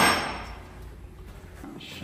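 A single sharp knock, like a hard object struck or set down, right at the start, ringing out for about half a second, then a low steady workshop background.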